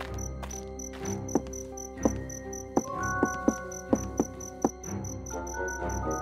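Crickets chirping in a steady rhythm, about four chirps a second, over soft background music of held notes with occasional plucked notes.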